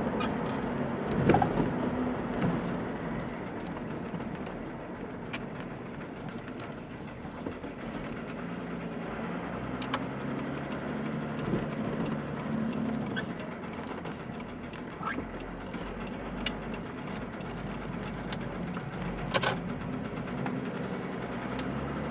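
A car's engine and tyre noise heard from inside the moving car, the engine note rising and falling as it slows for junctions and pulls away again. A few sharp clicks and knocks stand out from the steady running noise.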